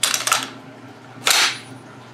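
Norinco T97 bullpup rifle's charging handle worked on the empty rifle, cocking the hammer: a cluster of sharp metal clicks as the bolt is drawn back, then a louder clack about a second later as the bolt slams forward.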